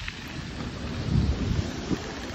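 Wind buffeting the microphone of a phone carried on a moving bicycle: a loud, uneven low rumble that starts suddenly and swells about a second in.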